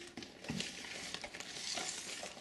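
Foil-tape-covered armor plates rustling and crinkling with small clicks as they are handled and turned.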